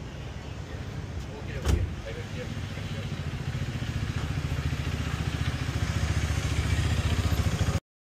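A motorcycle engine running close by, a low pulsing rumble that grows louder over the last few seconds. There is a single sharp knock about a second and a half in.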